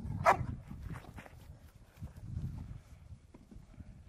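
A Labrador retriever barks once loudly about a third of a second in, then gives a second, fainter bark about a second in, over a low rumble.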